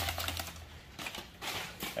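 Irregular clicking and rustling as a small metal toy car is unwrapped from a plastic bag and handled, light clicks of the metal body and wheels mixed with crinkling of the wrapping.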